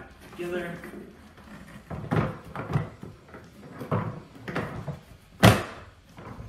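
Hard plastic knocks and clunks as the motor head of a 12-gallon Ridgid shop vac is set onto its drum and pressed into place, with one sharp, loudest knock near the end as it seats.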